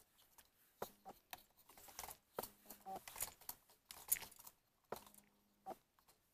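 Faint, irregular plastic clicks and rattles from the gears and joints of a hand-cranked VEX robotic arm as its knobs are turned to raise the arm, with a faint low buzz under some of the bursts.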